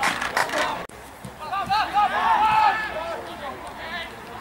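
Men's voices shouting on an outdoor football pitch. The sound cuts off abruptly a little under a second in, and a few more shouted calls follow.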